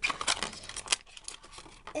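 Clear plastic packaging crinkling and clicking as it is handled. The crackle is dense for about the first second, then thins to scattered clicks.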